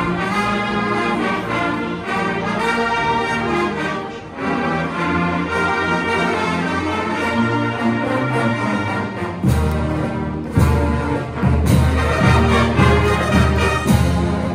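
Pep band playing a brass-led tune in sustained chords. From about nine and a half seconds in, heavy drum beats join in a steady rhythm.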